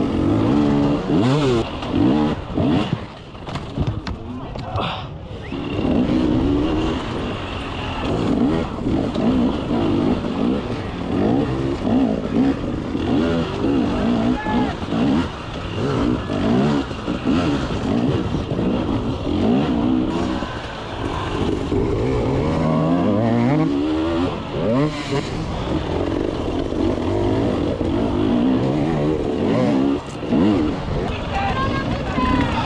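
Enduro motorcycle engine ridden hard, revving up and down in short bursts, its pitch repeatedly rising and falling as the throttle is opened and closed.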